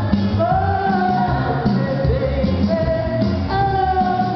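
A woman singing karaoke into a microphone over a recorded backing track with a steady bass line, holding long notes.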